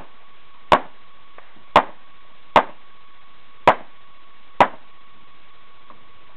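Five gunshots fired one at a time, unevenly spaced about a second apart, during a timed practical shooting course of fire.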